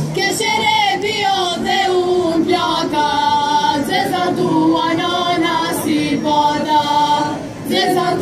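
A folk ensemble's choir singing a Macedonian folk song unaccompanied, several voices together in sustained, wavering lines. The instrumental music stops right at the start as the singing takes over, and there is a short breath between phrases near the end.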